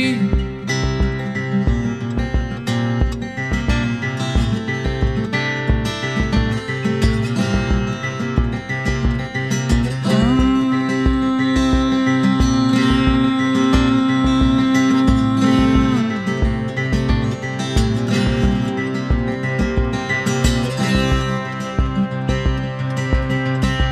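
Instrumental passage of a folk-rock song: acoustic guitar playing over a steady low pulse, with one long held note from about ten to sixteen seconds in.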